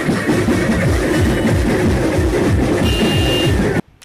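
Loud, distorted procession music blaring from a truck-mounted loudspeaker system, with deep booming notes that keep sliding down in pitch. It cuts off abruptly near the end.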